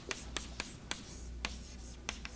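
Chalk writing on a chalkboard: a run of about five short, sharp taps and scratches as letters and an equals sign are chalked.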